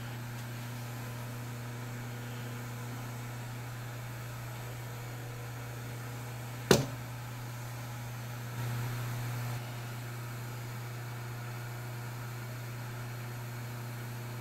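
Knee mill spindle motor running steadily with a low hum. A single sharp click comes about seven seconds in, and the hum is briefly louder for about a second a little later.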